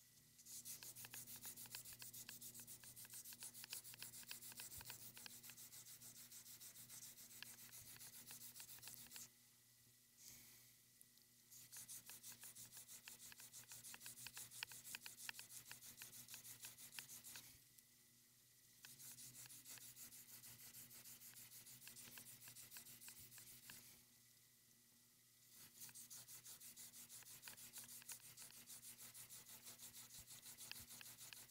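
Faint, rapid rubbing strokes of a hand-held abrasive stone across the edge of a fired cloisonné enamel earring, grinding the edges clean. The strokes come in four spells with three short pauses between them.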